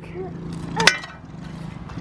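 Small engine of an SSR 70 mini dirt bike running steadily, a low even hum. A short sharp sound comes about a second in.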